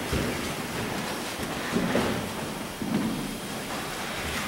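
Steady hiss of a hall's room noise, with a few soft bumps and shuffles of someone moving up to a lectern microphone.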